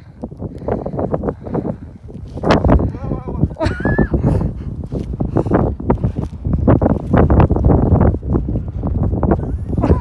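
Wind rumbling and buffeting on the phone's microphone, with a person's voice breaking in now and then in short bleat-like bursts of laughter.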